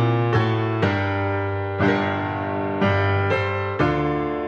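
Background piano music, slow and gentle, with a new note or chord struck every half second to a second.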